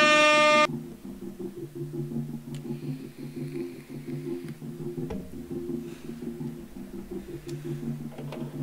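A loud air-horn sound effect that cuts off under a second in, followed by the quiet opening of a song: a repeating synthesizer arpeggio in low, steady notes, building up.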